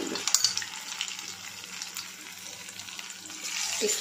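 Batter-coated baby potato deep-frying in hot oil: a steady sizzle with scattered crackles, loudest about half a second in and easing off in the middle.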